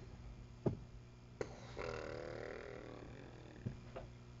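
Light taps of handling, and about two seconds in a faint, low vocal sound from a person, a hum or mumble lasting about a second.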